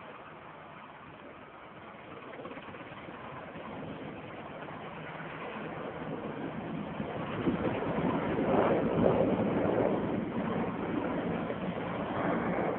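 Firefighting aircraft flying low, a steady engine noise that grows louder as it approaches, loudest about eight to ten seconds in, then eases slightly.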